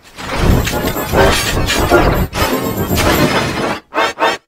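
A loud, harsh crash-like sound effect resembling shattering glass, mixed with faint distorted music. It starts a moment in, runs for about three and a half seconds, then cuts off.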